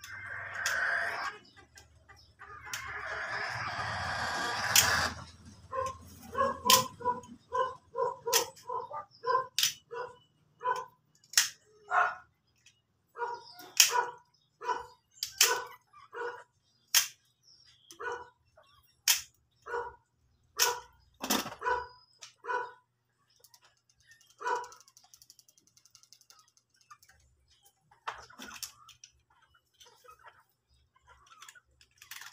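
A dog barking in a steady series, about two barks a second, for some fifteen seconds. It comes after a few seconds of rasping noise, and sharp clicks are scattered throughout.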